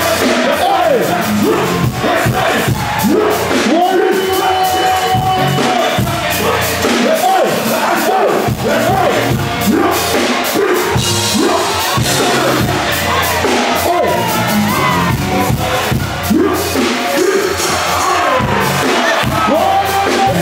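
Live hip-hop set on a festival stage through the PA: a band with keyboards and a steady beat, a performer's vocals over it, and a large crowd shouting along.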